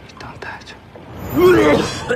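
Soft, breathy male speech, then a loud, strained retch in the second half as a drunk man heaves.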